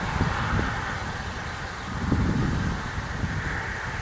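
Steady outdoor background noise, a low rumble with a hiss and no distinct events.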